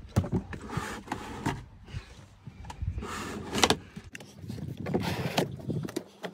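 Electrical wire being pulled through behind a car's plastic dashboard and pillar trim: uneven scraping and rustling of cable and plastic, with a few sharp clicks and knocks.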